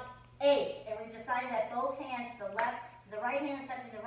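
A woman speaking in short phrases, with a faint steady hum underneath.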